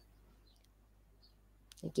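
A few faint, short clicks over quiet room tone, then a woman's brief spoken "okay" at the very end.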